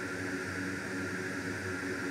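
Steady background hiss with a low hum, as from a fan running, with no distinct event.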